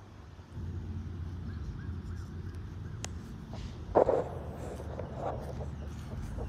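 Low rumbling handling noise from a phone's microphone rubbing against a shirt while the wearer walks. A brief loud sound comes about four seconds in, and a fainter one a second later.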